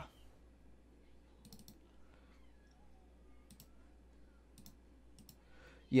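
Faint clicking at a computer: a handful of clicks, mostly in quick pairs, over quiet room tone.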